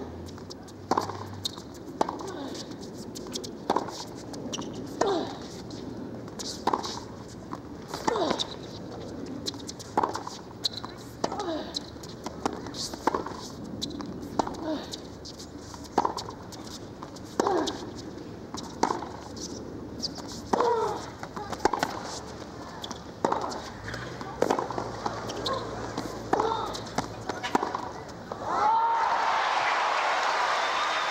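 Long tennis rally: racket strikes and ball bounces ring out roughly once a second over a crowd's low murmur. Applause breaks out near the end as the point is won.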